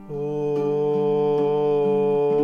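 A man's voice starting one long, steady sung note just after a brief break, over softly strummed ukulele chords.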